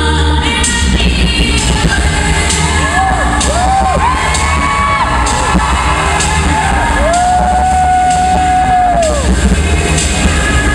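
An all-vocal a cappella group singing through a PA, with a deep sung bass line and vocal percussion keeping a steady beat. Over it a voice glides up and falls away in a series of arcs, the longest held in the second half.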